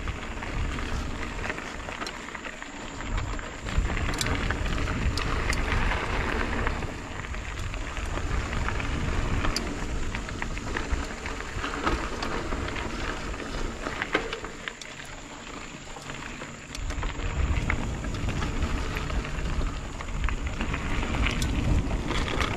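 Mountain bike riding a dirt singletrack, heard from a camera mounted on the rider: wind rumbling on the microphone over a steady crackle of knobby tyres on dirt and leaves, with frequent clicks and rattles from the bike. It eases off for a few seconds past the middle.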